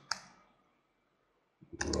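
A single sharp click at a computer, a keyboard key or mouse button, just after the start, then quiet room tone until speech resumes near the end.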